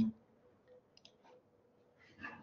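Near silence in a pause between words, with a few faint, short clicks spaced about a third of a second apart.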